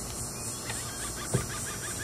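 Steady outdoor background with a low hum, and one short sharp knock about a second and a half in as the kayak's plastic deck cover is pressed into place.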